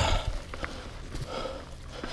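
Mountain bike rolling over a dry-leaf-covered dirt trail, with tyres crunching through leaves and the bike rattling over the rough ground. There is a loud thump right at the start as it hits a bump, and the rider's hard breathing comes through about halfway in.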